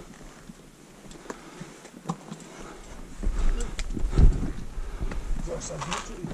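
A climber scrambling up rock: boots scuffing and knocking on limestone with breathing. From about three seconds in, a low rumble on the microphone sets in, loudest a little after four seconds.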